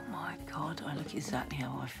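A woman speaking in a low, whispery voice, with faint background music under it.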